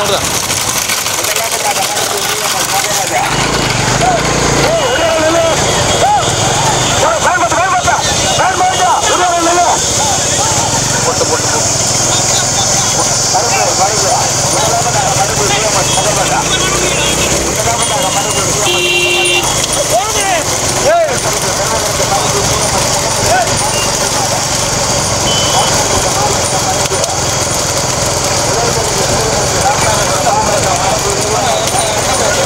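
Steady engine noise of motorbikes following a bullock cart race, under men's shouting voices urging the bulls on. A short beep sounds about two-thirds of the way in.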